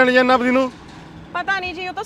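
Speech only: one line of dialogue runs until about half a second in, and after a short pause another line begins about a second and a half in.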